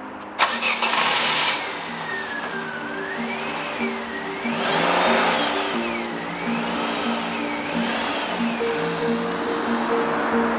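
A music score of low held notes and a slowly wavering high tone plays throughout. Under it, a car engine starts with a click and a short burst about half a second in, and the car drives off, swelling again around the middle.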